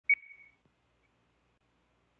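A single short electronic beep, one clear high tone that starts just after the beginning and fades out within about half a second.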